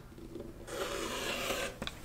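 Rotary cutter blade slicing through layered cotton fabric against the cutting mat along a ruler edge: one steady, rasping stroke about a second long.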